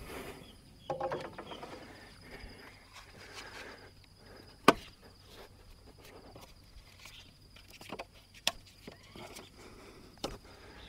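Scattered light knocks and clicks of parts being handled and fitted on the truck's cab, with one sharp click about halfway through and another near the end. A steady high insect drone runs underneath.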